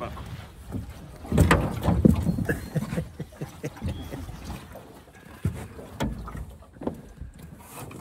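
Irregular knocks and bumps in an aluminum fishing boat, loudest and most frequent a second or two in, then sparser and fainter.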